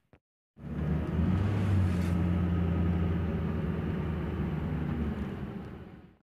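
A steady low engine hum starts about half a second in and fades out near the end.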